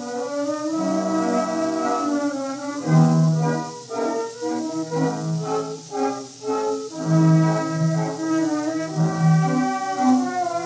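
Small orchestra playing a lively medley of show tunes, from a 1917 acoustic 78 rpm gramophone disc. The sound is thin, with no deep bass and little treble, under a steady surface hiss.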